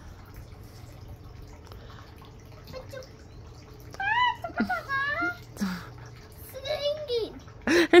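A battery-powered sound device inside a homemade cardboard robot, switched on and singing in short high-pitched, sweeping phrases that start about halfway through, over a steady faint hiss.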